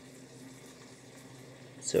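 Faint, steady hiss of food cooking on the stove, with a man starting to say "So" at the very end.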